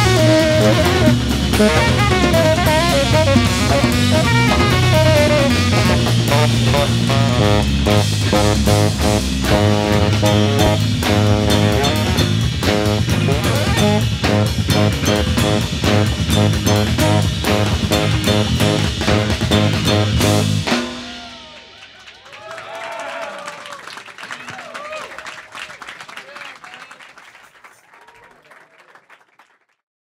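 Live band playing an upbeat groove with saxophone, electric guitar, bass guitar and drum kit. About two-thirds of the way through the music cuts off suddenly, leaving a much quieter passage of sliding pitches that fades away.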